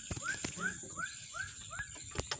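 An animal calling: a quick run of six or seven short chirps, each rising and then falling, about three a second.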